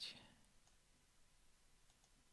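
Near silence with two faint computer-mouse clicks about a second apart.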